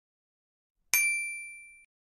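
A single bright chime, a ding, about a second in, ringing with a clear high tone and fading out over about a second: a slideshow sound effect marking an answer revealed as "true".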